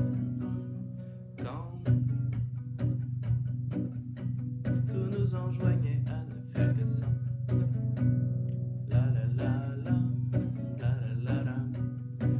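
Classical nylon-string guitar strummed in a steady rhythm on a single B minor chord, with the low notes ringing throughout.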